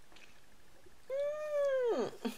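A pet's single drawn-out cry starting about a second in, holding one pitch and then dropping away at the end.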